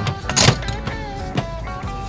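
Music playing, with a sharp knock about half a second in and a softer one about a second later as the hermetic compressor's metal pump body is handled over its opened steel shell.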